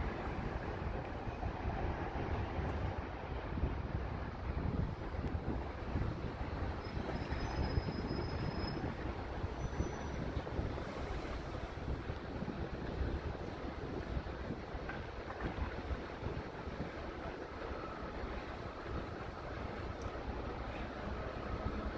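Steady wind noise on the microphone over a low, distant rumble from a freight train headed by NR-class diesel locomotives approaching from far down the line.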